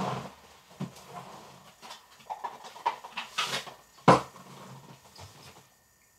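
Glass whisky bottles knocking and clinking as they are moved about on a table while a bottle is picked up. There are a few sharp knocks, the loudest about four seconds in, over faint shuffling.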